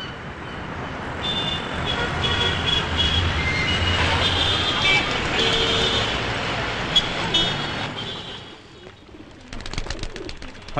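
City road traffic noise with repeated short car horn toots, swelling after the first second and fading away near the end.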